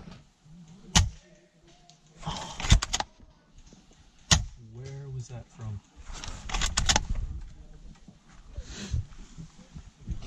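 Several sharp clicks and knocks: a single one about a second in, a quick cluster near three seconds, another single one a little after four seconds and a cluster near seven seconds. A brief low voice sounds in between.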